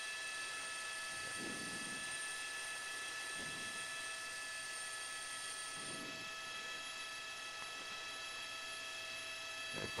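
News helicopter's turbine engine running steadily: a faint, even whine made of several held tones.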